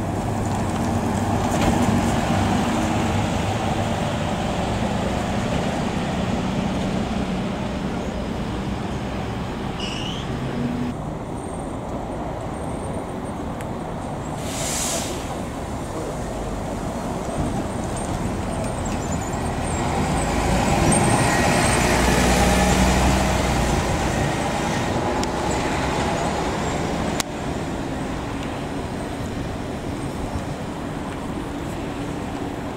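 Diesel city buses moving through a terminus. A Mercedes-Benz Citaro's engine is loud as it pulls away at the start, a short hiss of air brakes comes about halfway, and a Volvo city bus's engine swells as it passes about two-thirds of the way in.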